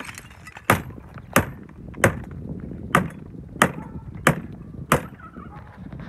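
Sharp, evenly spaced knocks on brick, seven in a row about two thirds of a second apart, as scrap bricks are struck while being sorted for reuse.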